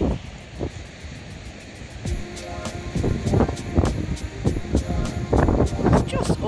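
Wind buffeting the microphone, with background music over it: a quick, even ticking beat, joined by held notes about two seconds in.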